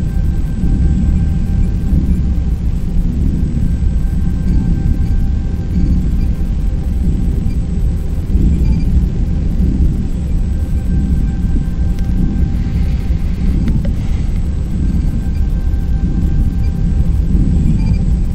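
Steady low electronic sci-fi ambient drone: a deep continuous rumble with a few faint steady high tones above it, and a brief faint crackle about thirteen seconds in.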